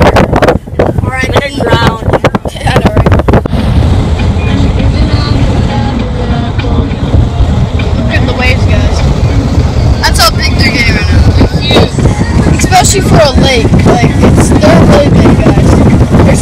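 Car driving along with heavy wind buffeting on the microphone: a loud, steady low rumble, with voices over it at the start and again about ten seconds in.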